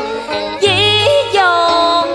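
Music from a Vietnamese tân cổ song: a melody of wavering, sliding notes over accompaniment, with a low bass note sounding for about half a second near the middle.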